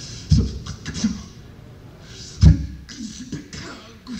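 Percussive mouth sounds made with the voice, in a live performance recording, with two heavy low thumps, the louder about two and a half seconds in.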